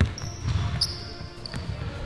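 A basketball bouncing on an indoor court floor, a few dull thuds, with a thin high squeak over the first second and a half.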